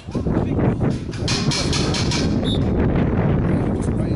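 Wind buffeting the camera microphone, a loud, uneven low rumble with gusts. A short high note sounds about two and a half seconds in.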